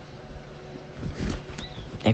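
Steady background hiss in a pause between spoken sentences, with a few faint short sounds about a second in.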